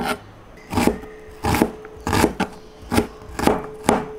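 Chef's knife chopping red onion on a cutting board, about seven cuts in four seconds at an uneven pace. A faint steady hum runs underneath.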